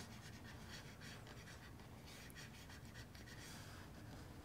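Near silence: faint room tone with faint scratchy rustling.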